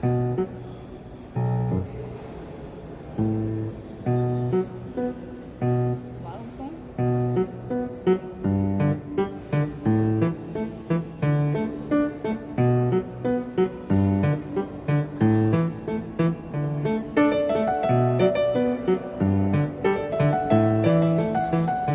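Grand piano played by hand: a simple tune over low bass notes, halting with gaps at first, then a steadier run of notes from about eight seconds in.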